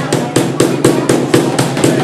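A rapid, even run of sharp bangs, about seven a second.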